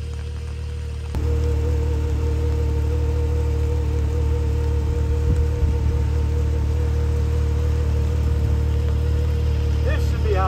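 A 2022 Can-Am Maverick X3 XRS side-by-side's turbocharged three-cylinder engine idling steadily, getting a little louder about a second in.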